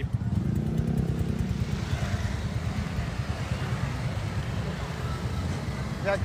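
Street traffic with a motorcycle engine running close by: a steady low rumble.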